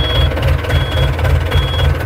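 The Everun ER408 loader's 25 hp three-cylinder diesel engine idling with an even low throb, while its reversing beeper sounds three times, a high short beep about every 0.8 s, because reverse gear is engaged.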